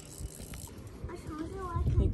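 Faint voices in the background, with a few soft low knocks.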